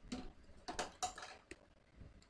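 Computer keyboard keystrokes: a handful of light, irregular clicks as a short word is typed.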